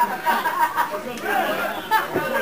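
Indistinct chatter of several voices talking and calling at once, with no clear words.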